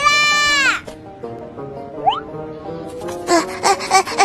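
A cartoon character's long, drawn-out call that ends under a second in. Light background music follows, with a quick rising glide about two seconds in. Excited cartoon voices start up near the end.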